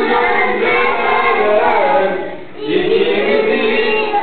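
A group of children singing a song together, with a short break between phrases a little over two seconds in.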